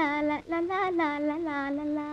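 A woman singing a high melody in long held notes with wavering, gliding ornaments, breaking off briefly about half a second in. It is the song of an old Tamil film soundtrack.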